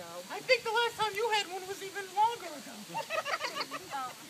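A person's voice making high-pitched, wordless vocal sounds, the pitch sliding up and down.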